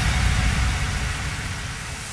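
Electronic background music in a break: a white-noise wash with a low rumble and no beat, slowly fading.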